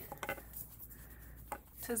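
Plastic TWSBI fountain pens being set down on a wooden board: a few light clicks and taps, two near the start and two more about a second and a half in.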